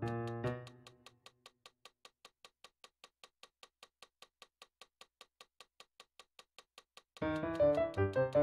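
Digital piano chords die away within the first second, leaving a metronome ticking steadily about four times a second on its own. Dense atonal chords start again abruptly near the end, over the same ticking.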